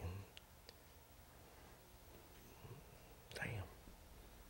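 Near silence: quiet room tone during a pause in conversation. A faint murmured voice sits at the very start, two light clicks come about half a second in, and a soft breathy vocal sound comes about three and a half seconds in.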